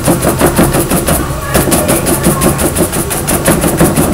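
A paintbrush scrubbed rapidly back and forth over a board, its bristles making quick, evenly repeated rasping strokes, several a second. The brush is working textured stroke marks into the board's coating as the ground for raised gold-leaf calligraphy.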